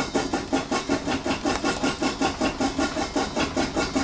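A rubber novelty eraser shaped like an In-N-Out burger, rubbed hard back and forth over pencil lines on paper: a steady run of quick scrubbing strokes, about five a second.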